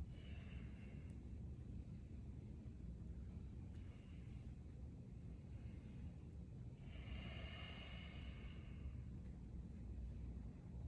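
Quiet breathing of two people straining at push hands, with short breaths near the start and a longer breath of about two seconds about seven seconds in, over a low steady room hum.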